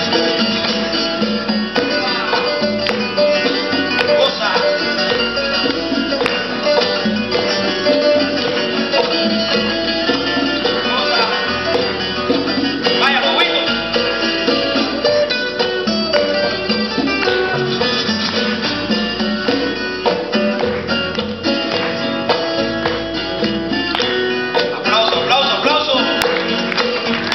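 Live acoustic ensemble music: two acoustic guitars lead with fast plucked and strummed lines over an upright double bass, with congas and cymbals.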